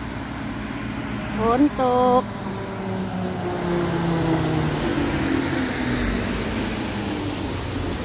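Road traffic: a vehicle passing, a steady rushing noise that swells in the middle and fades, with a hum whose pitch slowly drops.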